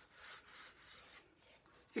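Faint rubbing of fingers smearing wet blue craft paint across cardboard, stopping a little over a second in.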